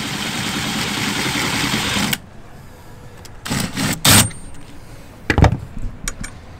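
Cordless drill running under load, boring into a part clamped in a small vise, for about two seconds before stopping suddenly. It is followed by three short knocks and clanks.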